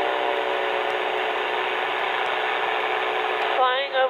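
Revo ultralight trike's engine and pusher propeller droning steadily in cruise flight, a constant hum under a rush of wind noise.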